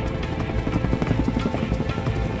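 Helicopter flying, its rotor beating in rapid pulses, heard along with background music.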